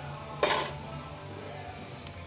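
A single sharp metallic clank about half a second in, with a brief ring: the steel header tubing, clamped together, knocking against the steel workbench as it is handled.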